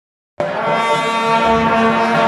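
Shaojiao, the long brass horns of a Taiwanese temple horn troupe, blown together in one loud held blast that starts about half a second in.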